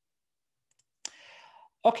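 Silence, then a faint click about halfway through, followed by a short soft hiss, just before a man says "Okay".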